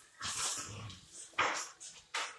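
A Rottweiler and a pit bull play-wrestling, making a few short huffs and a brief low growl about half a second in.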